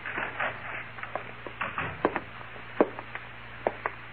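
Radio-drama sound-effect footsteps on a wooden floor: a scattered run of short knocks at uneven spacing, over the steady low hum of the old recording.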